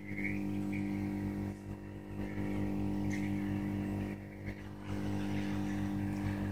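Hot-air heat gun running: a steady motor hum with a hiss of blowing air, heating a phone's display panel to loosen its adhesive.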